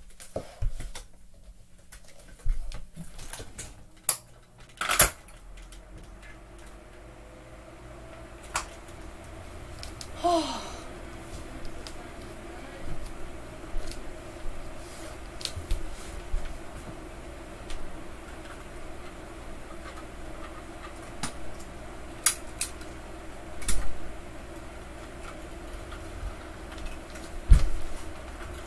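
Die-cast toy cars clacking and knocking on a wooden floor in scattered sharp hits, over a steady electric fan hum that comes up a few seconds in.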